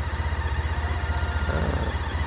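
An engine idling: a steady low throb pulsing at an even, fast rate.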